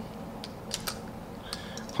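A few light, scattered clicks and taps of a smartphone being pushed and seated into a plastic clamp-style phone holder.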